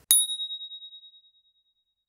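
A single bright ding, a bell-like chime sound effect for the title-card transition, struck once and fading out over about a second and a half.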